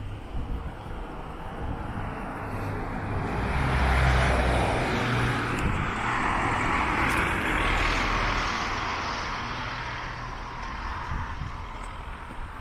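Road traffic passing close by: tyre and engine noise swells to a peak about four seconds in, stays up for a few seconds, then fades away slowly.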